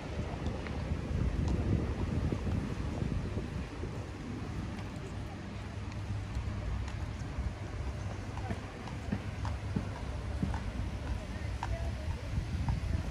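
Footsteps on cobblestone paving, small scattered clicks of shoe soles. Under them is a low wind rumble on the microphone that eases after about four seconds.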